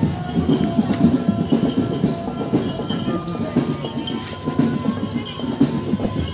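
Drum band percussion playing a steady, busy march rhythm: rapid drum strokes under cymbal crashes about twice a second.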